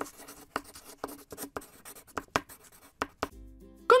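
Chalk writing on a blackboard: a quick, irregular series of short scratchy strokes, over faint background music.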